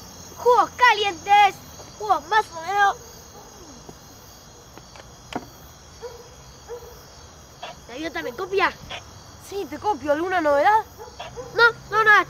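Insects, likely crickets, chirping steadily at night. Short bursts of a high, wavering call cut in over them about half a second in and again from about eight to eleven seconds in.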